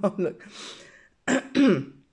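A woman clearing her throat and coughing, with the loudest, roughest throat-clearing near the end: a frog in her throat.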